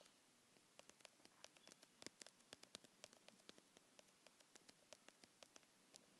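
Faint, quick, irregular clicks of typing on a phone's touchscreen keyboard, a few keystrokes a second over a low hiss.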